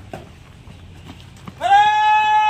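A loud blown horn-like note, one held tone that bends up in pitch at the onset and then holds steady, starting about one and a half seconds in. A few soft knocks come before it.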